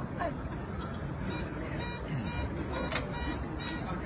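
Open-air city plaza ambience: a steady low background noise with faint distant voices and a few light clicks.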